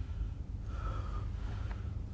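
A man breathing hard through his mouth, out of breath after shouting: two audible breaths of about half a second each, over a low steady hum.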